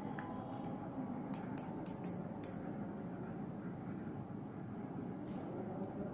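A concealer tube being handled: a quick run of about five short, crisp clicks about a second and a half in, over steady room hum.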